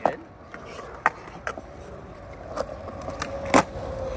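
Skateboard wheels rolling on smooth concrete, with a few light clicks and one sharp, loud clack of the board a little past three and a half seconds in.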